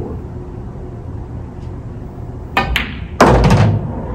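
Pool shot: the cue tip strikes the cue ball low for draw, and a sharp click follows as the cue ball hits the object ball. About a second later a loud thunk comes as the object ball drops into the pocket of a coin-operated bar table, followed by a brief low rumble.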